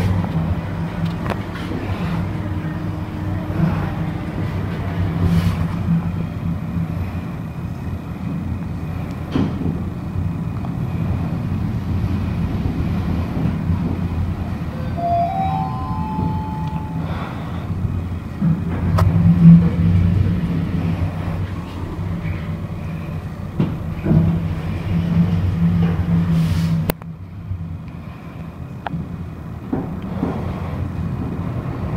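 Lift car travelling down: a steady low hum and rumble of the ride heard inside the cab, with a short run of rising tones around the middle. The ride noise drops off suddenly near the end as the car stops at the lowest floor.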